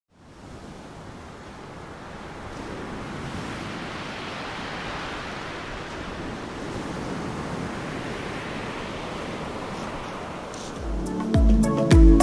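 Steady rush of ocean surf that fades in at the start, then music with a strong regular beat comes in about eleven seconds in and is louder than the surf.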